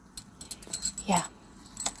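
Thin gold-tone metal bangle bracelets clinking against one another as they are handled, a few light, scattered clinks.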